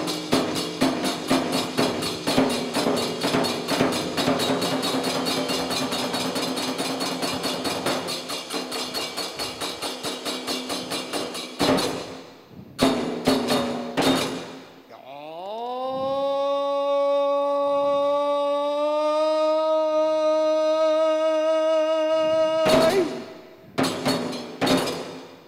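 Kagura taiko drum and kane hand cymbals playing a fast, even rhythm that breaks off about halfway, followed by a few single strikes. A voice then rises into one long held chanted note, with strikes resuming at the very end.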